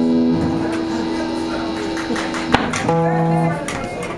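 Amplified electric guitar ringing out held notes and chords: one note sustains until about two and a half seconds in, then a sharp click and a new short chord is struck.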